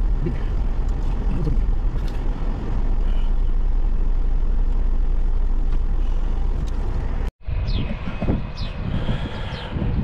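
Steady low rumble of a car's engine and tyres heard from inside the cabin as it rolls slowly through a parking lot. About seven seconds in it cuts off suddenly. It gives way to lighter open-air sound with a few high chirps.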